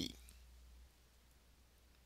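Near silence: room tone with a faint low hum that drops away about a second in, after the last breath of the narrator's sentence.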